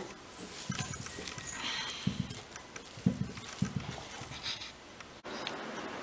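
A hand mixing grated potato in a small steel bowl, giving soft, irregular knocks and rustling. It breaks off about five seconds in, leaving a faint steady hiss.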